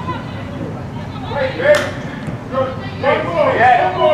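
Voices shouting and calling out at a football match, louder and busier in the second half. One sharp knock comes a little before the middle.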